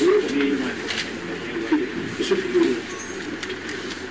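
Pigeons cooing in low, wavering phrases over faint background voices, with a few sharp clicks about a second in and twice more a little after two seconds.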